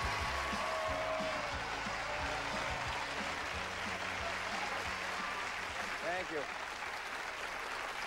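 Studio audience applauding, with a musical sting under it for the first few seconds; a man says "thank you" near the end.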